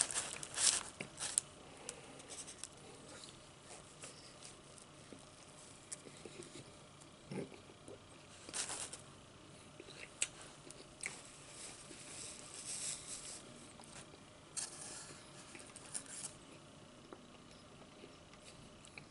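Close-miked eating sounds of a person chewing potato chips: a handful of short, sharp crunches and mouth smacks scattered through, with quieter chewing between.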